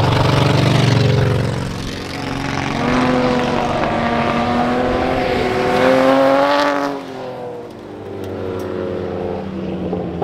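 Four-wheel-drive folkrace cars racing past on a dirt track. Their engines climb in pitch under hard acceleration, loudest as they pass close about six seconds in. About seven seconds in the sound drops suddenly and falls in pitch as the cars pull away.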